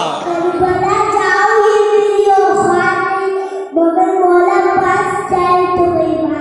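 A young boy singing into a microphone, holding long notes, with a brief pause for breath about halfway through.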